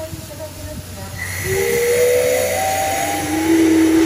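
Steam whistle of the C11 class steam locomotive C11 325 blowing one long blast, starting about a second and a half in over a rush of hissing steam. Its pitch shifts and then settles on a lower held note near the end.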